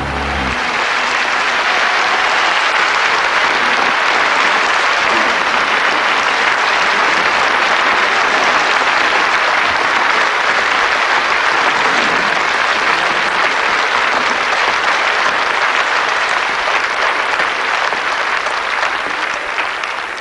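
Audience applauding steadily, starting as the band's final note stops about half a second in, and dying away near the end.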